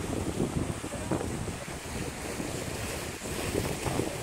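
Ocean waves washing against a rock seawall, with wind buffeting the microphone.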